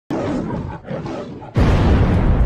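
Logo-intro sound effects: a growling roar that breaks off briefly and resumes, then about one and a half seconds in a sudden, louder deep boom that rumbles on.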